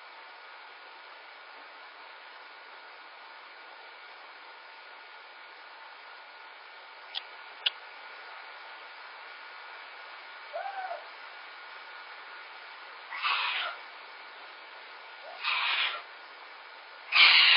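A young pet, most likely a kitten, crying in a crate: one short, faint cry about ten seconds in, then two louder half-second cries near the end. These are heard through a home security camera's microphone over a steady hiss, with two small clicks just past the middle.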